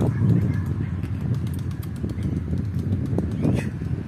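Domestic pigeons cooing close by: a low, continuous sound, with a man's voice counting briefly near the end.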